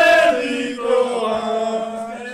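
Men's voices chanting in drawn-out sung notes: one long held note that drops to a lower, held note under a second in.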